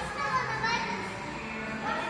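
Children's voices shouting and calling out during an indoor football game.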